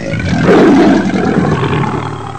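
Cartoon dinosaur roar sound effect: one long, loud roar, loudest about half a second in and then slowly fading.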